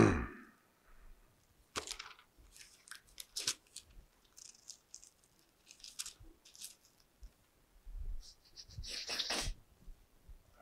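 A man clears his throat. Then comes crisp paper rustling in short bursts as thin Bible pages are leafed through, picked up close by a clip-on microphone.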